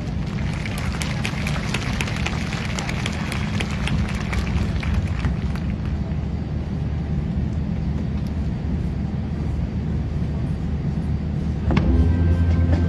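Audience applauding, the clapping thinning out after about five seconds over a low crowd murmur; music starts suddenly just before the end.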